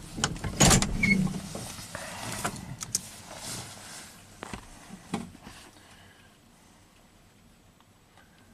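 Inside a pickup's cab with the engine just switched off: a few scattered clicks and knocks over a low background that fades away, growing very quiet over the last couple of seconds.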